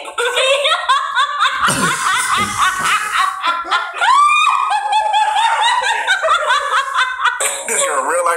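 A man and a woman laughing hard, with a high rising squeal about four seconds in.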